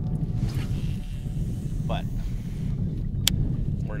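A heavy musky rod cast with a baitcasting reel, a faint whir in the first second as the lure flies and line pays out, over a steady low rumble. A single sharp click comes about three seconds in.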